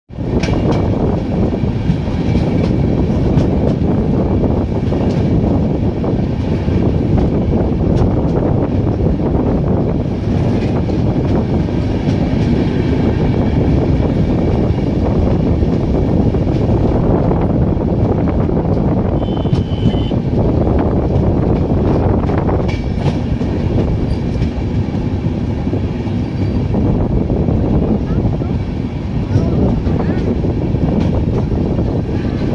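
Express passenger train pulling into a station: a steady, loud rumble of coaches running on the rails, with a few sharp clicks from the wheels.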